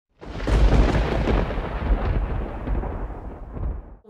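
A thunderclap that starts suddenly, then a deep rolling rumble of thunder that fades away over a few seconds.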